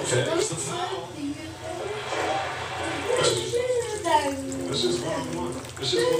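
Indistinct speech from a television basketball broadcast playing in the background, a commentator talking.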